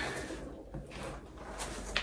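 Cardboard shipping box being handled and its flaps pulled open: faint rustling and scraping, with one short sharp click near the end.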